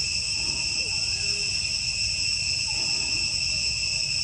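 Steady insect chorus: an unbroken, shrill drone held at a few high pitches, over a low rumble.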